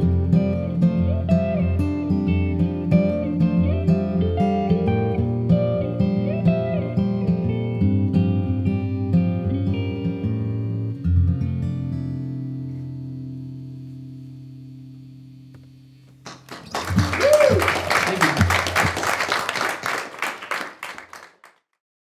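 Acoustic and electric guitars play the closing bars of a song, ending on a chord about eleven seconds in that rings out and slowly fades. Then a small audience applauds and cheers, with one whoop, until the sound cuts off just before the end.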